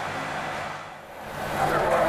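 Restaurant dining-room ambience: a steady low hum of room noise, with faint voices rising near the end.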